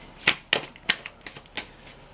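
Tarot cards being handled as a card is drawn from the deck: a few short, sharp card flicks and clicks.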